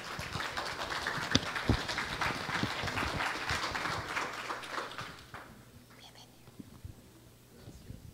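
Audience applauding, a dense patter of many hands clapping that dies away about five seconds in.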